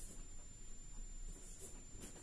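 Faint sound of a marker writing on a whiteboard.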